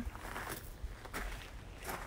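Faint footsteps on garden ground, a few soft steps under a low background hiss.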